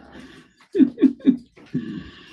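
A man laughing: a short run of three or four quick voiced "ha" bursts about a second in.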